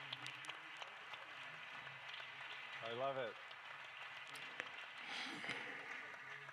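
Faint audience murmur with scattered light clapping and small ticks in a quiet hall. About three seconds in there is one short voiced sound with a falling pitch.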